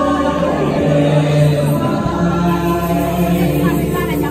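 Music: a group of voices singing together in long held notes.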